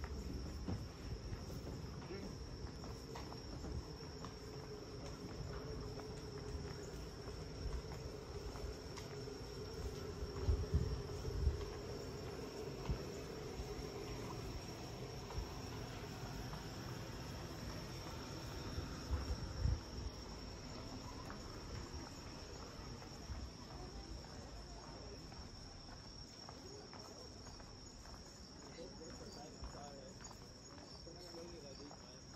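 Insects, crickets by the sound of it, chirring steadily at one high pitch, with a few low thumps about ten seconds in and again near twenty.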